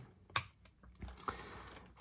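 A pause in speech holding one sharp click about a third of a second in, then two or three fainter clicks and a faint hiss.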